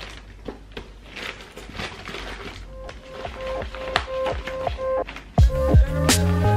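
Papers and plastic folders rustling as they are handled, then background music comes in: a repeating melody from about halfway, with a bass and beat joining near the end.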